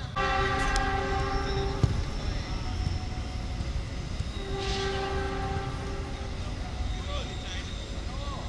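Train horn sounding two long blasts, each about a second and a half, over a steady low rumble.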